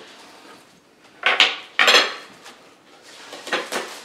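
Cutlery and a plate being handled on a table: two sharp clinks a little over a second in, then lighter knocks near the end.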